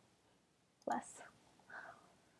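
A woman muttering a word under her breath, almost a whisper, about a second in, then a brief softer murmur; otherwise near silence.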